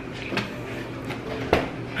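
A couple of light knocks and clicks of household handling over a low steady hum, the sharpest click about one and a half seconds in.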